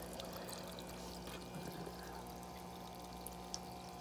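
Faint water bubbling and trickling from a small aquarium filter, over a steady low hum, with a few light ticks.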